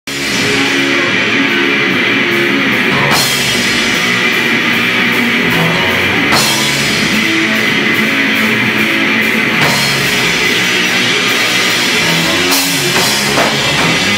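Live rock band playing an instrumental passage on electric guitar, bass guitar and drum kit, with a crash cymbal struck about every three seconds.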